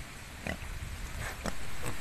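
Pig grunting: about four short grunts over a steady background hiss.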